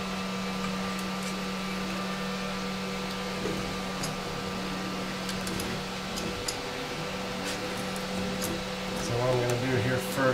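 Steady fan hum, a low drone with a few fainter higher tones, under faint clicks and rustles of wires being handled now and then.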